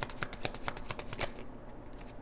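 A tarot deck being shuffled by hand: a quick run of card clicks, about eight to ten a second, that stops about a second and a half in.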